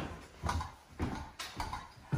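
Footsteps walking across a bare floor, about two steps a second, each a dull knock.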